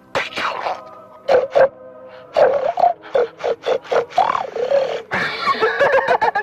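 A man's distorted voice on a telephone line making incoherent, perverted babble in loud, broken bursts that swoop up and down in pitch. Sustained choir-like music plays softly underneath.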